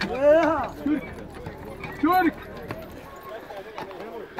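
A pair of draught horses stamping their hooves on dry dirt as they strain to drag a heavy log, with a few short shouts from men urging them on.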